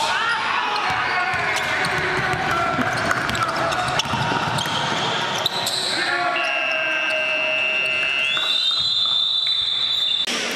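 Live indoor basketball game sound: a ball bouncing on the hardwood court and players' voices, echoing in a large hall. Over the last couple of seconds a sustained high-pitched tone sounds.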